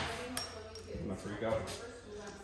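A few light metallic clinks and taps as small metal parts are handled, with a sharp tap about half a second in.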